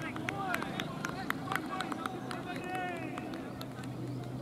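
Open-air ambience at a cricket ground: distant players' voices calling out on the field, with a run of short sharp clicks in the middle and a steady low hum underneath.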